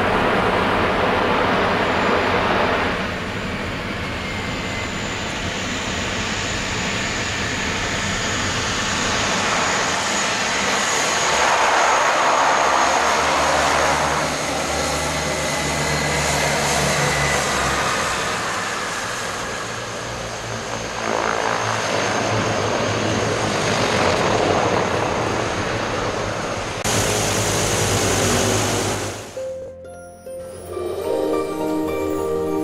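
de Havilland Canada DHC-6 Twin Otter's two turboprop engines running loud as it lands and taxis: a propeller drone with a steady high turbine whine, swelling around the middle.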